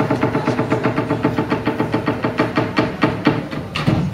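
Live electro-flamenco music: a sustained synth chord under a fast, even clicking beat of about six or seven hits a second.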